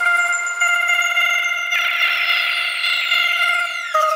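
Psybient electronic music: a held synthesizer chord with high whistling tones gliding slowly downward over it, without drums or bass. The texture grows brighter about two seconds in.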